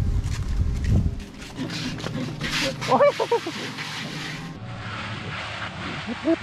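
Wind rumbling on the microphone for about the first second, then a steady hiss of outdoor wind, with a man's short call about three seconds in.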